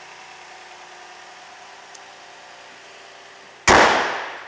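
A 2012 Toyota Highlander's 3.5-litre V6 idling steadily, then near the end the hood is slammed shut with one loud bang that rings away over about a second.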